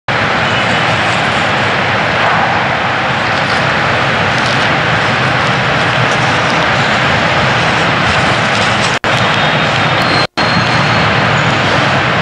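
Loud, steady rushing noise with no pitch, cut off twice for an instant about three quarters of the way through.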